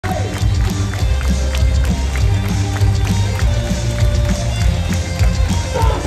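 Loud cheer music with a heavy bass line and a steady beat, played over a baseball stadium's sound system.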